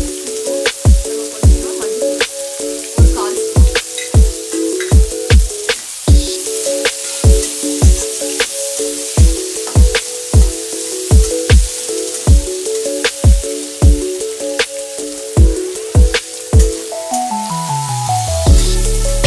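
Background electronic music with a steady deep kick-drum beat and sustained chords, over the sizzle of diced raw mango frying in oil in a kadai as a spatula stirs it.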